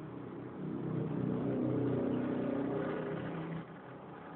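Electric motor and propeller of a Sky Surfer RC glider run up on the bench with a steady pitched hum that swells about a second in and cuts off sharply near the end: a brief throttle test.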